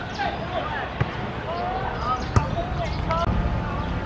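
A football being kicked on the pitch: two sharp thuds, about one second in and about two and a half seconds in, the second the louder, over players' shouting.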